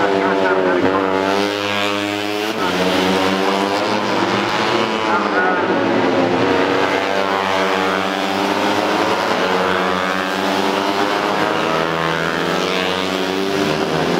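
Several racing underbone motorcycles go through a fast corner. Their engine notes overlap, falling in pitch as the riders brake and rising again as they accelerate out.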